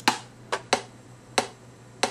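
Computer mouse buttons clicking, about five sharp clicks at uneven intervals, over a faint steady low hum.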